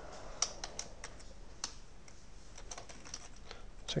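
Typing on a computer keyboard: light, irregular key clicks, thinning out for a moment in the middle.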